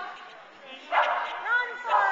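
A dog barking: a loud bark about a second in, then two short barks that rise and fall in pitch near the end.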